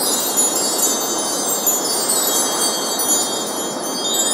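Shimmering wind-chime-like sparkle of many high ringing tones over a steady whooshing wash, the sound effect of an animated logo reveal.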